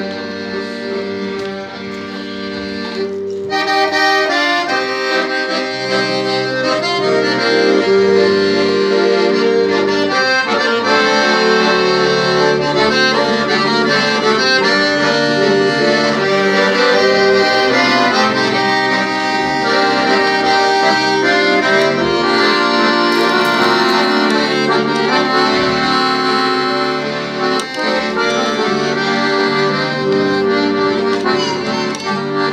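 Piano accordion playing a melody over held chords, its notes sustained and reedy; the playing grows louder about four seconds in and stays full from then on.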